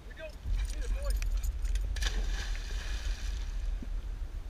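A pitbull leaping into a lake: a sharp splash about halfway through, followed by about a second of falling water spray. Wind rumbles on the microphone, and a few short squeaks and clicks come just before the splash.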